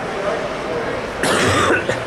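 A person coughing: one short, harsh burst a little past the middle, over low background murmur.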